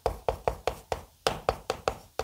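Chalk striking and scraping on a chalkboard while characters are written: a quick run of sharp taps, about six a second.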